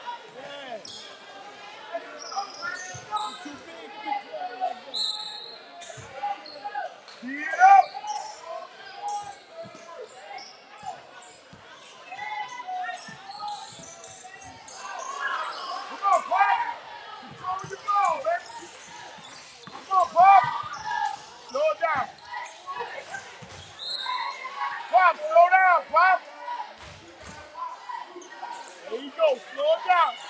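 Basketball game sounds in a gymnasium: the ball bouncing and dribbling on the hardwood court and sneakers squeaking, with loud shouts from players and spectators echoing in the hall, strongest in several bursts in the second half.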